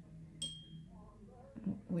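A single light clink of a hard object, with a short high ringing tone that dies away within half a second, about half a second in. A faint low hum runs underneath.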